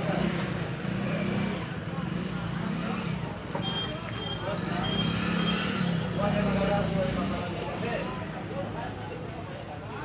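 Indistinct talking over a steady low rumble, with a few short high beeps near the middle.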